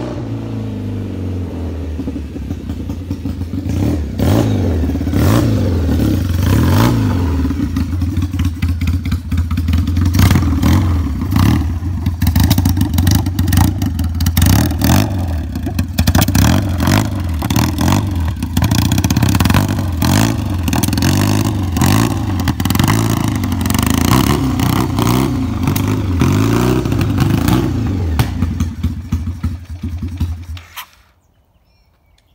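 Custom Triumph motorcycle engine running loudly, revved up and down again and again, with sharp crackles from the exhaust throughout.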